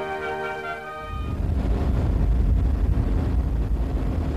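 Orchestral music for about the first second, then it cuts to a car on the move: the steady, low running of a 1957 BMW 507's V8 engine with road noise, heard from inside the car.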